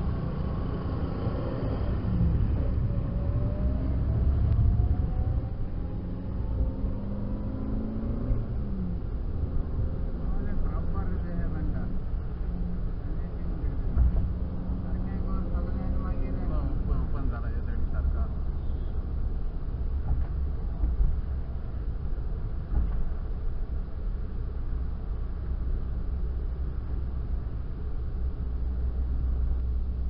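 A car's engine and road noise heard from inside the cabin, a steady low rumble. In the first several seconds the engine pitch rises as the car accelerates away from slow traffic.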